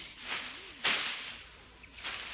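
Two swishes of a scythe blade cutting through tall grass: a softer one about a third of a second in, then a louder, sharper one just under a second in.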